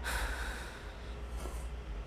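A person's sharp breath in right at the start, fading over about half a second, then quieter breathing over a low steady hum.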